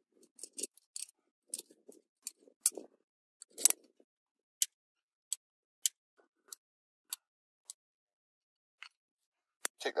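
Irregular sharp metallic clicks and clinks of climbing gear (carabiners and quickdraws on a lead climber's harness and rope) as he moves up the rock, with soft scuffs at first. The clicks come quickly for the first few seconds, then thin out to one every half second to a second.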